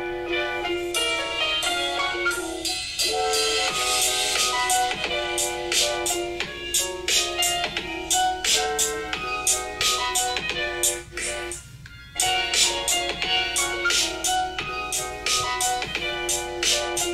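Music played at full volume through the Ulefone Armor 23 Ultra's single loudspeaker: an instrumental track with a steady beat and almost no bass. There is a brief drop in the music about eleven seconds in.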